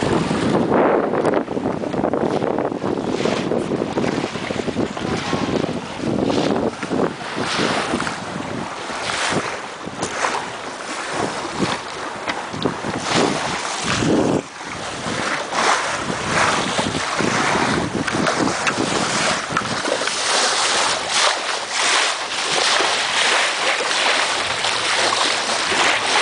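Wind buffeting the microphone over the rush of water along the hull of a Farr 6000 trailer yacht sailing under spinnaker. The noise surges and drops irregularly every second or so, with no engine running.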